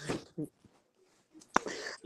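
Speech over a live-stream call: a voice trails off, then about a second of near silence, then a sharp click and breathy speech starting again near the end.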